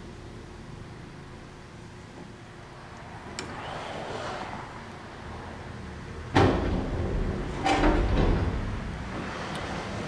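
Handling noises at a stopped metal lathe as a micrometer is taken off and set back on a turned steel bar: light rubbing and shuffling, then a sudden sharp knock a little after halfway and a second bump about a second later.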